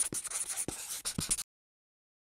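Felt-tip marker drawing on a white drawing surface: a quick run of short, scratchy strokes that cuts off abruptly about one and a half seconds in.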